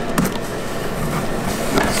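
A knife slitting the packing tape along a cardboard box, then the box flaps being pulled open, a rough scraping and rustling of cardboard.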